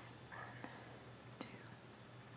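Very faint handling sounds of crocheting a foundation chain: a soft rustle and a couple of tiny clicks as an aluminium crochet hook draws cotton yarn through loops, over a low steady hum.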